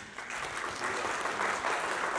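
Audience applause: steady clapping from many hands that starts right at the pause and carries on without a break.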